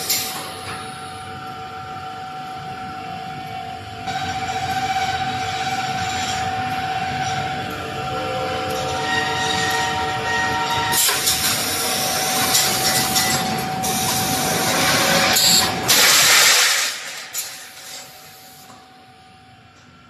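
Wire mesh welding machine running: a steady mechanical drone with thin whining tones, louder noisy bursts about 11 and 16 seconds in, then dying down over the last few seconds.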